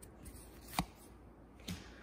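Trading cards being handled: a single sharp click a little under a second in and a softer one near the end as a card is moved to the back of the stack, over quiet room tone.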